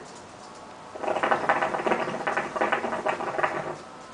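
Hookah water bubbling as a long draw is pulled through the hose: a dense, rapid gurgle that starts about a second in and stops just before the end, lasting close to three seconds.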